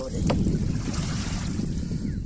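Wind buffeting the microphone: a steady low rumble, with a short knock about a third of a second in.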